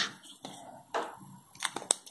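Faint clicks and taps from a felt-tip pen and paper being handled on a desk: one about a second in, then several close together near the end.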